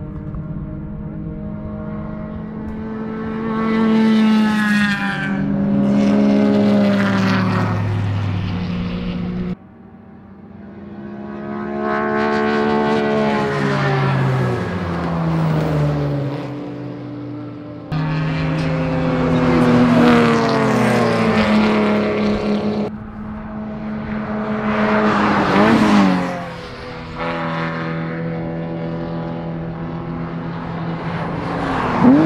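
Racing cars' engines running hard on the circuit, heard over several passes: the pitch climbs under acceleration and drops away as each car goes by or shifts down. The sound breaks off and changes abruptly twice, about ten seconds in and again just before the twenty-second mark.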